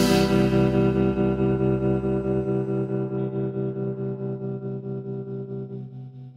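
Final chord of a rock song: a cymbal crash at the start, then an electric guitar chord ringing out through a pulsing tremolo effect and slowly fading away. The lowest bass notes drop out about halfway through.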